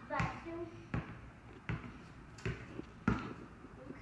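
A short voice sound at the start, then four sharp thuds, evenly spaced about three-quarters of a second apart.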